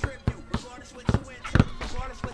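Basketballs bouncing on an outdoor court surface during a two-ball dribbling drill: a string of sharp dribble thumps at uneven intervals.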